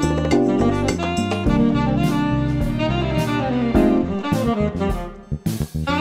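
Instrumental bossa nova jazz with a saxophone lead over bass and drum kit. The music drops away briefly near the end, then the full band comes back in with drum hits.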